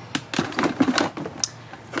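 Cardboard product boxes being shifted and packed into a clear plastic storage drawer: a run of light knocks and taps of cardboard against plastic.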